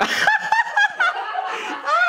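Loud, high-pitched laughter in quick repeated bursts, starting suddenly.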